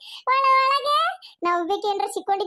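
A high-pitched cartoon character's voice: one long, held sing-song note, then quick chattering speech starting just before the end.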